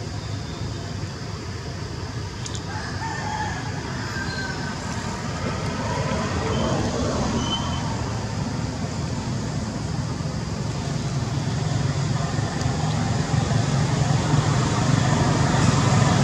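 Steady low rumble of road traffic that grows louder toward the end, with a few short, high calls in the middle.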